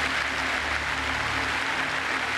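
Large hall audience applauding steadily, heard on an old archival recording with a steady low hum underneath.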